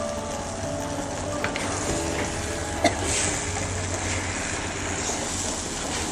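Eggplant and chili sambal sizzling in oil in a wok over a wood fire, with a metal spatula scraping and knocking against the pan a couple of times as it is stir-fried.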